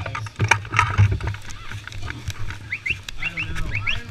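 Irregular close knocks and rustling from a person moving right up against a low-mounted action camera, over a low fluctuating hum, with a few short rising squeaks near the end.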